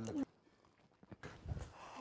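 A voice cut off short, then about a second of dead silence, then faint clicks and a single low thump about a second and a half in.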